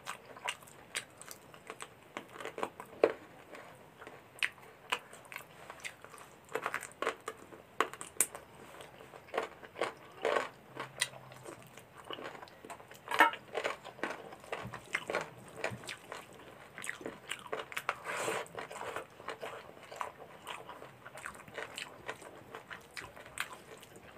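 Close-miked mukbang eating of rice and chicken curry by hand: chewing and wet mouth smacks, coming as irregular short sharp clicks throughout.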